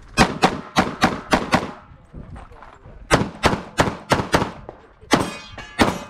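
Rapid pistol fire from a competitor's Limited-division handgun: a fast string of about six shots, a pause of about a second and a half, then about five more. Near the end two more shots come, the first followed by a ringing like a hit steel target.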